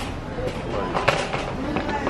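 Grocery store background: faint voices in the aisle over a steady hum, with a couple of sharp clicks or knocks, one about a second in and one near the end.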